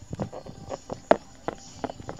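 Irregular light taps and knocks of small plastic toy figurines being handled and moved against a surface close to the phone's microphone, about five in two seconds.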